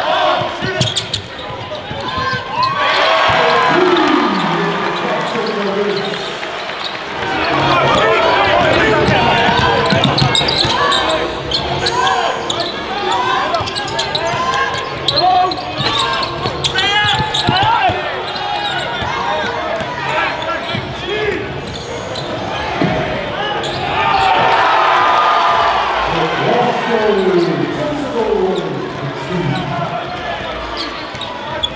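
Live basketball game sound in an echoing sports hall: the ball bouncing on the hardwood court, sneakers squeaking and indistinct voices of players and spectators.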